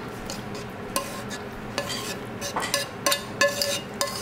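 Metal tongs scraping and clinking against a metal pan as a thick, creamy noodle mixture is pushed out and poured into a paper cup. There are several sharp clinks, some ringing briefly.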